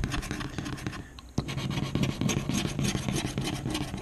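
California $10 Golden Ticket scratch-off lottery ticket having its coating scratched off with a small tool, in quick repeated scraping strokes. There is a brief pause with a single click about a second in.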